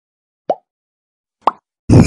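Two short pop sound effects from an animated subscribe-button graphic, each a quick rising blip, about a second apart, with silence around them. Loud outdoor noise cuts in suddenly just before the end.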